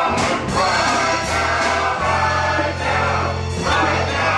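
Gospel music: several voices singing together over held bass notes and drum strokes.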